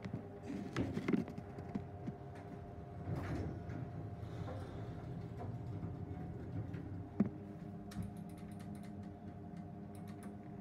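Schindler hydraulic elevator car with a steady machine hum, scattered light clicks and taps from its door and buttons, and one sharp knock about seven seconds in.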